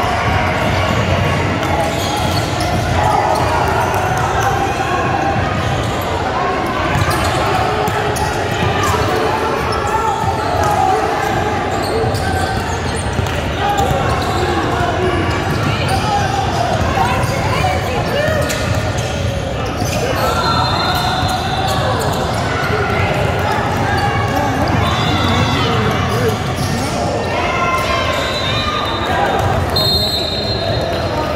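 Basketball being dribbled on a hardwood gym floor during a game, the bounces ringing out in a large gym over the voices of players and spectators calling out.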